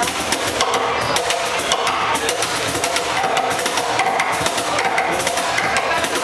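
Live acoustic band playing an instrumental passage: a cajon keeps a busy beat of rapid hits under two acoustic guitars.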